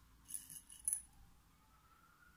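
Pearl beads clinking against one another and a glass bowl as fingers pick one out: two brief clusters of light clicks in the first second.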